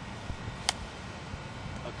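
Golf iron striking a ball in a short chip shot: a single sharp click about two-thirds of a second in, over a steady low rumble.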